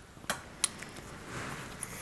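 Faint handling of a rose and a small florist's knife: a few light clicks, then a soft scraping in the second half as the knife cuts into the rose stem.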